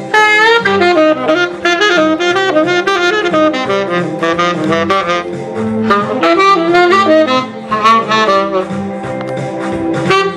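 Saxophone playing a quick, winding melody in short runs over a rock-and-roll accompaniment with a bass line.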